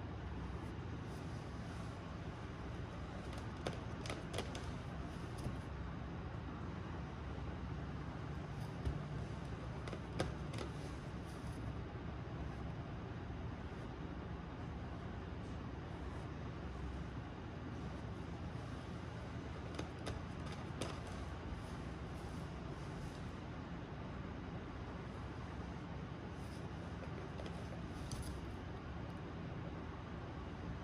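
Steady low background noise with a few faint, brief taps scattered through it.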